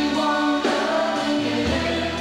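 Rock band playing live, with electric guitar and held chords that change twice, about two-thirds of a second and a second and a half in.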